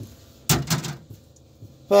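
A single clunk with a brief rattle about half a second in, the sound of the homemade vapor-blast cabinet's door or lid being handled, followed by quiet room tone.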